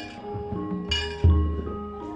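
Gamelan accompaniment to a wayang kulit performance: metallophones ring out a steady melody, cut through twice by the sharp metallic clinks of the dalang's keprak plates, with a deep thump a little past the middle.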